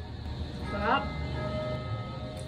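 A rooster crowing about a second in, a call that climbs and then holds its pitch. Steady ringing tones of church bells sound faintly underneath.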